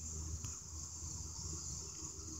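Crickets chirring in a steady high-pitched drone over a low rumble, with a faint click about half a second in.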